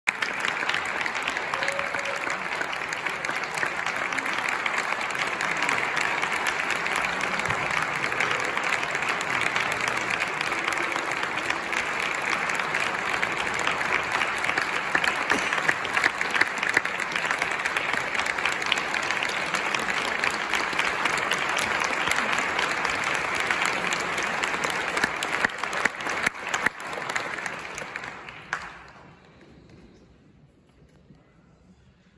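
Audience applauding steadily, a dense patter of many hands clapping, which thins out and stops about a second before the end.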